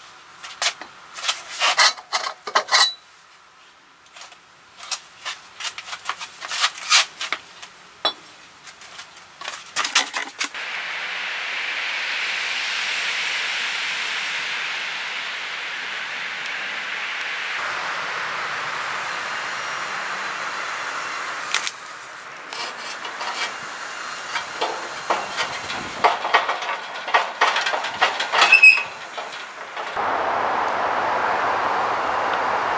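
Steel axle tubes being handled and fitted together: bursts of sharp metal clinks and knocks. In the middle a steady hiss runs for about ten seconds, and the clinks and knocks come back near the end.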